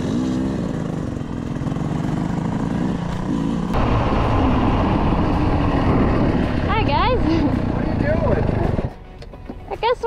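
Dirt bike engines running steadily while riding. A little over a third of the way in, this cuts to a louder, steady rushing noise with brief voices, which stops about a second before the end.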